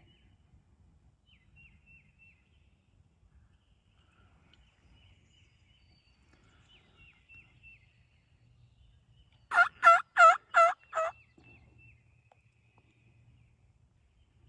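Turkey calling: a quick run of five loud, evenly spaced notes lasting about a second and a half, about ten seconds in. Faint small-bird chirps sound on and off.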